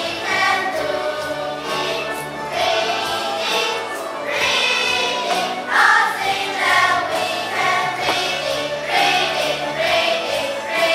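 A class of children singing an English song together as a choir, with instrumental accompaniment.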